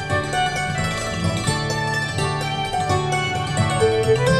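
Hammered dulcimer and fiddle, with acoustic guitar, playing a quick instrumental folk tune with an Irish lilt: a run of fast struck-string dulcimer notes over bowed melody and strummed chords.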